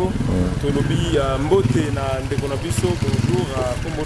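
A man talking over a motorcycle engine running close by, a steady low rumble under his voice.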